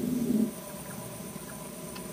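A low rumble stops suddenly about half a second in. It leaves a steady night chorus of insects trilling, with faint repeated chirps that fit frogs.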